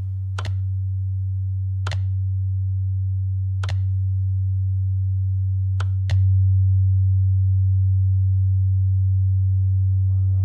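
A steady low pure test tone from a hearing-test tone generator, stepping up in volume with a sharp click each time the dial is turned: four clicks, the last a quick double that gives the biggest jump.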